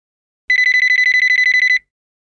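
Mobile phone ringing for an incoming call: one trilling ring on a single high tone, a little over a second long, starting about half a second in.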